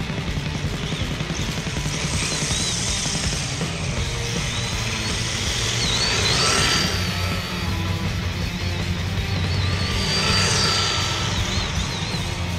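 Background music over electric RC drift cars running on asphalt, with a high wavering motor whine. The motor whine and tyre hiss swell twice as a car passes close, about six seconds in and again near the end.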